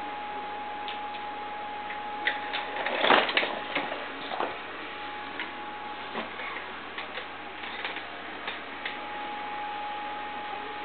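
Scattered taps and knocks of a baby's small shoe and hands against a hardwood floor as she plays and scoots, with a cluster of louder knocks about three seconds in.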